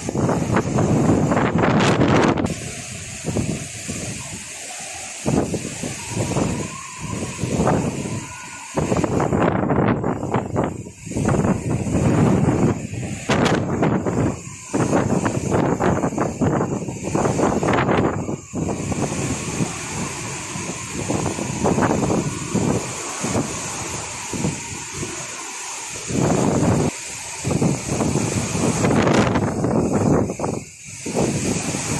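Cyclone storm wind buffeting the microphone in strong gusts that swell and drop every second or two, over the noise of heavy surf.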